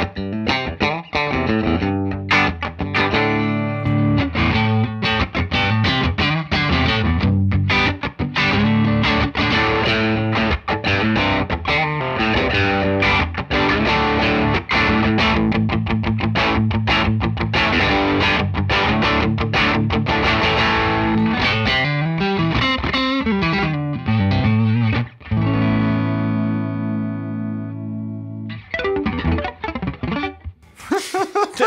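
Fender American Professional II Telecaster played through an amp with overdrive in a fast, busy run of picked notes, with a second electric guitar alongside. A chord rings out for a few seconds near the end, then a quick sweep-picked flurry follows.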